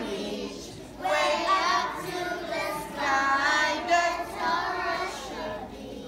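A group of young children singing a song together in phrases, starting about a second in after a brief lull.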